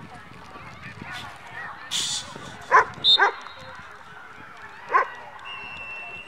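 A dog barking three times: two quick barks about three seconds in and a third about two seconds later.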